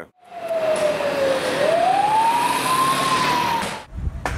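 A siren wailing over loud street noise: its pitch falls slowly, then rises and levels off. It cuts off suddenly near the end.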